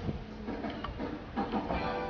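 Wind rumbling on the microphone outdoors in falling snow, with faint background music underneath.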